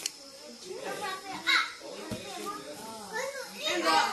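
Small children chattering and playing in a room, their voices overlapping, with one brief loud shout about a second and a half in.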